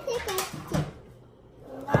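A child's voice trailing off, then a couple of light knocks and a short quiet stretch. Another voice starts near the end.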